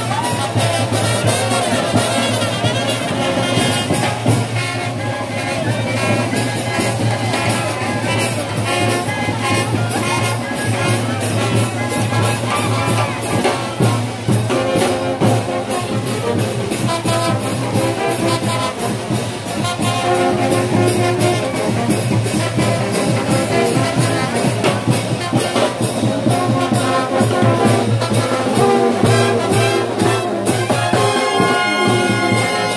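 Brass band playing porro: trumpets and trombones carry the tune over bass drum and cymbals, with a steady beat throughout.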